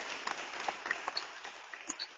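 Audience applause dying away, the dense clapping thinning out to a few scattered claps.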